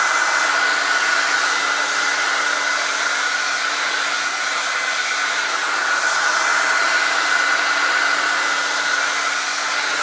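Handheld hair dryer running continuously, a loud steady rush of air with a whine over it, blown across wet paint to dry it faster.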